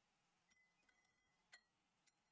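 Two faint clinks of a paintbrush against a hard container, about half a second in and about a second and a half in, the first leaving a short ringing tone; otherwise near silence.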